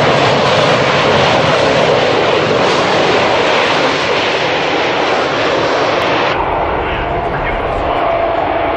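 Jet engines of a rear-engined jet transport aircraft running loudly as it taxies, a dense roar. About six seconds in the sound changes abruptly, becoming duller, with a steady whine.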